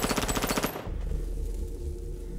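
Rapid automatic gunfire, a fast even string of shots that cuts off suddenly just under a second in, followed by a steady low rumble.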